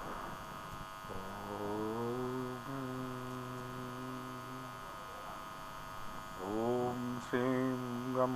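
A man's voice chanting in long, low held notes, each sliding up into its pitch: one from about a second in lasting nearly four seconds, and a second starting near the end. It is the opening of a Sanskrit mantra recitation.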